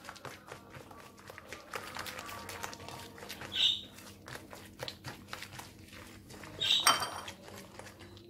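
A hand squishing and beating a soft creamed butter, egg and sugar mixture in a glass bowl, with rapid wet squelches and clicks. Two short high squeaks stand out, about three and a half seconds in and near the end.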